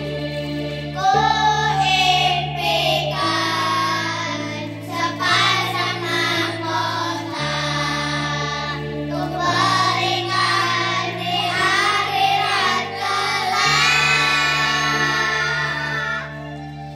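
A group of children singing a song together in unison over an instrumental accompaniment whose held bass notes change every second or two. The voices come in about a second in.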